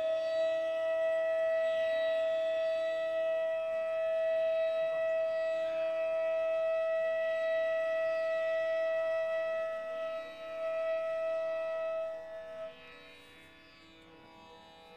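Bansuri bamboo flute holding one long, steady note in Raga Malkauns over a soft, steady drone. The note fades out near the end, leaving only the quieter drone.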